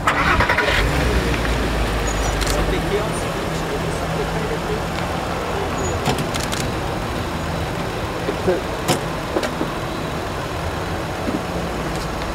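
Car engine starting, with a heavy low rumble about a second in, then running at idle. A few sharp clicks are heard over it.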